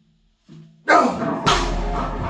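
Steel strongman log dropped from the shoulders onto rubber gym mats: a loud crash about a second in, then a heavier deep thud half a second later as it settles. The hollow log rings on afterwards.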